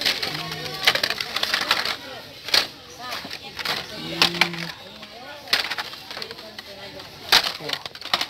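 Hot Wheels blister-card packages being shuffled and picked through by hand: plastic blisters and cardboard backings clacking and crinkling against each other in quick irregular clicks, the sharpest about seven seconds in.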